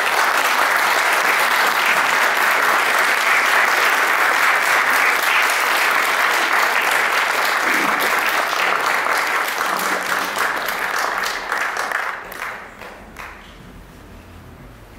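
Audience applauding steadily, dying away about twelve seconds in.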